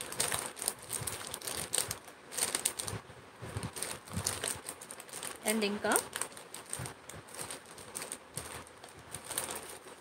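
Clear plastic jewellery pouches crinkling and rustling in irregular bursts as they are handled. A brief vocal sound comes a little past the middle.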